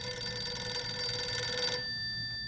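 Vintage desk telephone's bell ringing: one long ring of about two seconds that cuts off near the end, its bell tones lingering briefly afterward.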